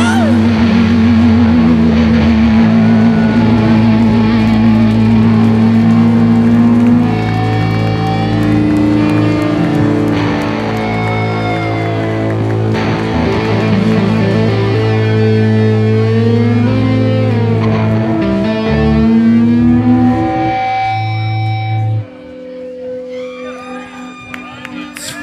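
Post-hardcore rock band playing live: distorted electric guitars holding long notes, one with a wavering vibrato, over bass and drums. The band stops sharply about 22 seconds in, leaving guitar notes ringing on.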